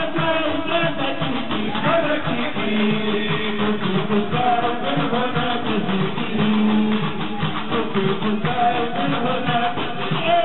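Tunisian stambali music: group singing over a plucked string instrument, typical of the gumbri bass lute, with a dense, even clatter of metal castanets and hand clapping.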